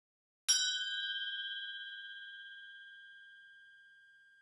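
A single chime sound effect, like a small bell struck once, about half a second in: a bright ding with several clear pitches that rings on and fades away over about three and a half seconds.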